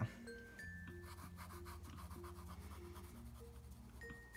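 Faint pencil scratching on drawing paper: a graphite pencil making a run of quick short strokes for about two seconds in the middle, over soft background music.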